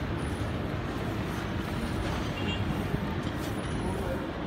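Steady city traffic rumble with faint voices in the background.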